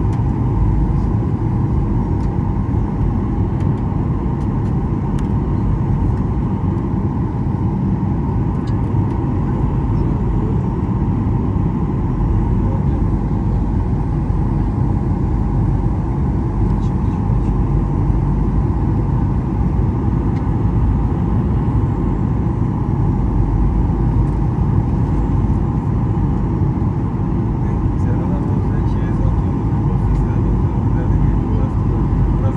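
Airliner cabin noise by the window beside a wing-mounted turbofan engine during the approach to landing: a steady low rumble of engine and airflow with a faint hum.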